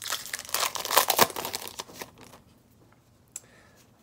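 Foil Yu-Gi-Oh booster pack wrapper being torn open and crinkled for about two seconds, then a single sharp click about three seconds in.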